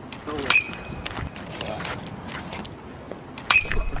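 A baseball bat hitting a ball twice, about three seconds apart. Each hit is a sharp crack with a brief ringing ping after it.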